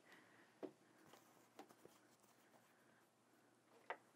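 Near silence with a few faint, scattered soft clicks and fabric handling as a quilt is rolled onto a quilting frame's rail by hand.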